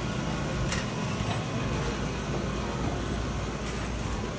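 Steady background noise of a crowded store, a low rumble with a general hum, broken by one sharp click about three quarters of a second in.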